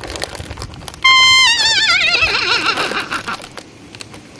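A comedic horse-whinny sound effect: a loud, high held note about a second in that then wobbles and falls in pitch, fading out by about three seconds. Faint crinkling of the snack bag precedes it.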